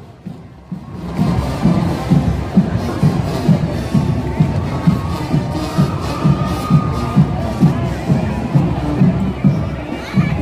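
Marching band playing, with a steady bass drum beat of about two strokes a second, starting about a second in, over the sound of the crowd.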